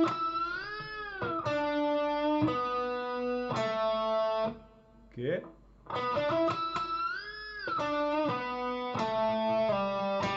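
Electric guitar playing a slow lead lick in B minor pentatonic twice: picked notes, a high string bend that rises and falls back, then held notes. Between the two runs there is a short pause with a brief rising string noise.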